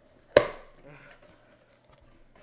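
A single sharp crack of a taped cardboard box flap being pulled open, dying away over about half a second, then faint handling of the cardboard.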